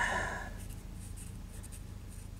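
Felt-tip marker rubbing on a metal tube-base pin as the pin is coloured in. There is a short rub at the start, then fainter scratches, over a steady low electrical hum.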